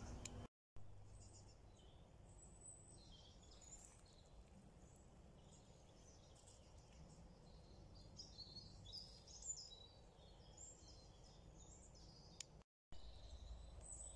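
Near silence: faint outdoor ambience with scattered faint bird calls through the middle. The sound drops out completely twice, briefly, about half a second in and near the end.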